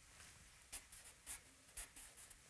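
Compressed charcoal stick scratching across newsprint in a few short, faint strokes.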